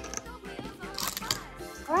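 Light plastic clicks and crinkles as a clear plastic cup is handled and glitter packets are taken out of it, over soft background music.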